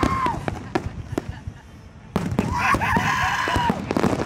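Fireworks crackling and popping in quick, irregular cracks, then about two seconds in a man letting out a long, wavering whoop.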